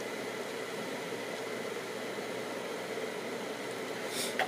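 Steady, even background hiss and hum with a faint high tone: room noise, with no distinct events.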